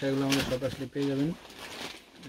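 A man speaking in short phrases with drawn-out vowels, mostly in the first second and a half, then quieter. A brief rustle of a saree's fabric as it is handled.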